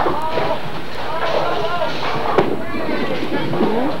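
Bowling alley din: several voices chattering at once, with two sharp knocks, one right at the start and one a little past halfway.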